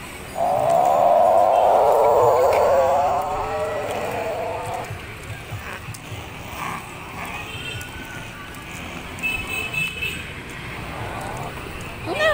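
A long, wavering, voice-like cry lasting about four seconds, starting just after the beginning; after it come quieter scattered sounds and faint high thin tones.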